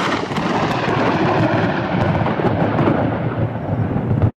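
Loud, continuous thunder rumbling with storm noise.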